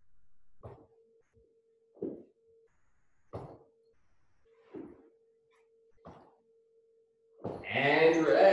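A person doing seated twists with a backpack makes a short sound about every second and a half, in rhythm with the side-to-side rotations. A faint steady hum comes and goes underneath.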